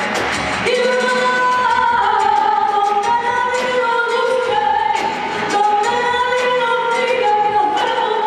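A woman singing a melody of held notes into a microphone with live band accompaniment and light percussion ticking in time.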